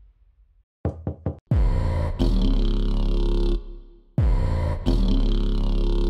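Three quick knocks, then two long, deep droning hits of horror-trailer sound design, each starting with a falling pitch sweep and lasting about two seconds.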